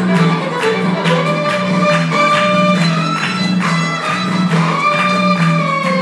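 Live bluegrass band playing a fiddle-led tune: fiddle melody with sliding notes over upright bass and acoustic guitar keeping a steady beat of about two strokes a second.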